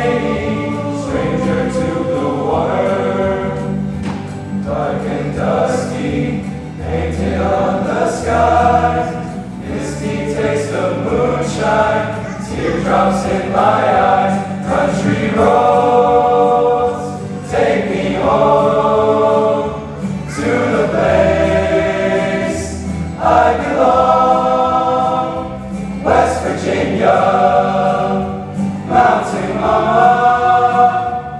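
Teenage men's chorus singing in several-part harmony, in long held phrases with short breaks between them.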